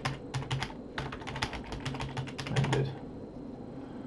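Typing on a computer keyboard: a quick, uneven run of keystrokes that stops a little under three seconds in.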